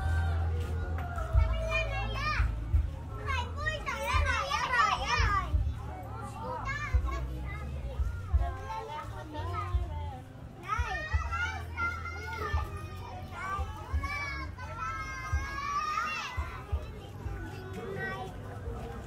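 Children shouting and chattering in high, excited voices, in bursts about three seconds in and again from about eleven seconds, over a steady low hum.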